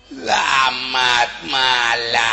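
A man's voice letting out three loud, drawn-out, wavering cries in a stylised stage voice.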